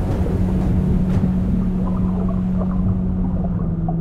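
A low, steady droning tone over a deep, muffled underwater-style rumble, a sound-design effect for sinking under water. The higher hiss fades away in the second half.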